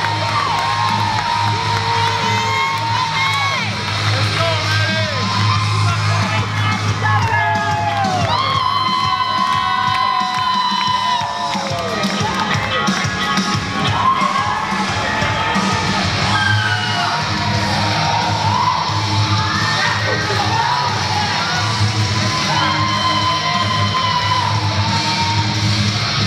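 Wrestling entrance music with a steady bass, under a crowd cheering, whooping and yelling.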